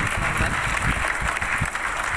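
Audience applauding: many people clapping at once in a steady patter.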